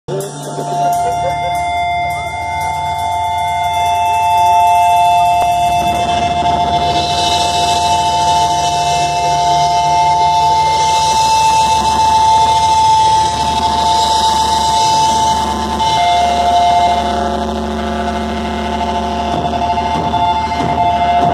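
Black metal band playing live: distorted electric guitars hold long, steady chords over a low rumble, and a wash of cymbals comes in about six seconds in.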